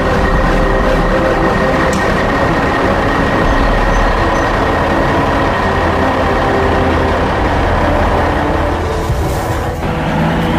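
Heavy military cargo truck's engine running steadily as it drives, a continuous low drone.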